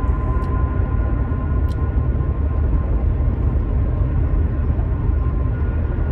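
Steady low road and engine rumble inside a moving car's cabin, with a faint steady whine above it.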